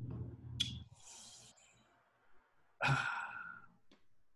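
A man sighing and breathing out close to the microphone while thinking, then a drawn-out hesitant "uh" of about a second near the end.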